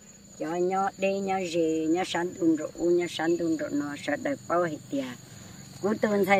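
A woman speaking in Hmong in short phrases with brief pauses, over a steady high-pitched drone of insects. The voice drops away for the last second or so, leaving the insect drone.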